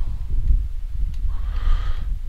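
A person breathing out near the microphone, a soft breath near the end, over a steady low rumble.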